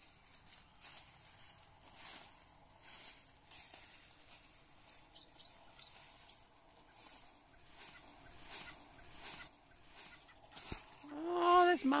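Dry leaf litter rustling and crunching as someone moves and reaches through it. A few short, high chirps come in quick succession about halfway through, and an excited voice rises near the end.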